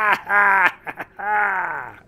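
A man's deep, theatrical mocking laugh: three long drawn-out "ha" sounds, the last one sliding down in pitch.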